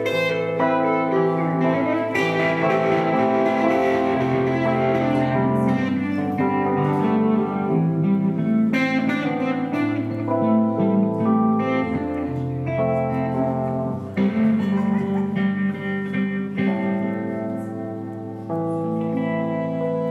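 A live country band playing an instrumental stretch with no singing. Guitar is prominent over bass notes that change every second or two.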